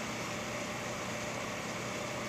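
Steady background room tone: an even hiss with a faint low hum, with no other event.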